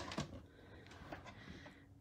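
A drawer being slid open, faint, with a small knock near the start.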